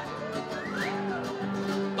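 Live band music with guitars playing, with a voice calling out over it.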